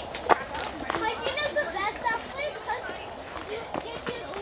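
Children's voices calling and chattering at a distance, with a few footsteps on a dry dirt trail.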